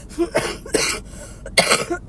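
A sick woman coughing, about four harsh coughs, the last one the loudest, as she tries to bring up phlegm to spit out. She is ill with a respiratory virus.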